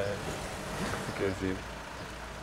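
Steady low rumble of car engines idling in a street, with brief speech over it.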